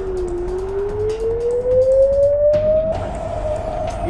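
An air-raid warning siren wailing as one steady tone that sinks and then slowly climbs in pitch, over background music with a light beat. It marks incoming rocket fire.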